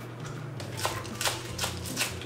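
Chef's knife slicing scallions on a wooden cutting board: about four crisp knife strokes against the board in the second half, with quieter handling of the greens before them.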